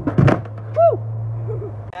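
Skateboard going off a small launch ramp and clattering down onto concrete: a quick run of sharp knocks in the first half second. About a second in comes a short yelp that rises and falls in pitch, over a steady low hum.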